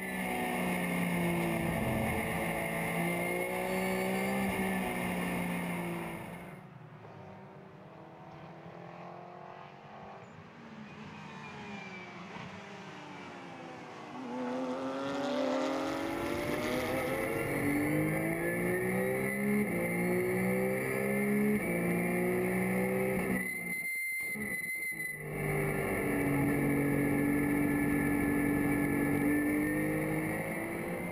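Porsche 911 GT3 Cup race car's flat-six engine at racing speed, heard from inside the cockpit: the pitch climbs and drops in steps with each gear change. For a stretch in the middle it sounds quieter and farther off, and near the end it cuts out for about a second before returning at a steady high pitch.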